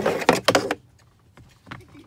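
Plastic scraping and clicking from a car's glove box being handled and unclipped, a loud burst lasting under a second, then a single click near the end.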